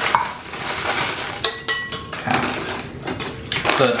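A fork whisking egg batter in a glass bowl, clinking against the glass with a few short rings, over the rustle of crushed cereal crumbs being poured from a plastic bag onto a plate.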